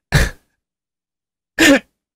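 Two brief non-speech sounds from a person's voice, such as a cough or a breathy laugh. The first is a short breathy burst at the very start, and the second is a short voiced sound just before the end, with dead silence of about a second between them.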